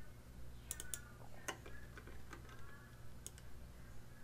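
A few faint, scattered clicks of a computer mouse over a low steady hum.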